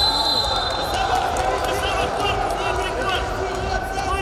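Arena hall sound at a wrestling tournament: steady crowd chatter and calls from around the mats, with a brief high steady tone in the first second.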